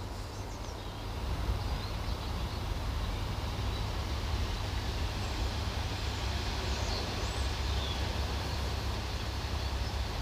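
Wind on the microphone: a steady low rumble with a hiss over it, and a few faint high bird calls.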